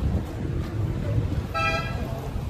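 A short car horn toot: one steady beep about a second and a half in, over a low rumble of street noise.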